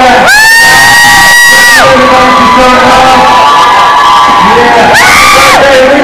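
Crowd cheering and whooping, with two loud, long, high whoops: one lasting about a second and a half near the start and a shorter one about five seconds in.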